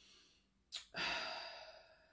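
A woman's sigh: a short, quick breath in about three quarters of a second in, then a long breath out that fades away.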